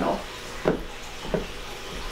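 Spatula scraping thick cookie dough around a stainless steel mixing bowl, two short strokes.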